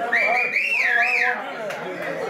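A person whistling: one high, wavering whistle that rises and dips in pitch for about a second and a half, then stops, with voices behind it.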